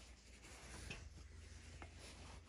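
Near silence with faint handling sounds: a light rubbing and two soft ticks from a plastic squeeze bottle being worked against a cylinder wall as it applies engine oil.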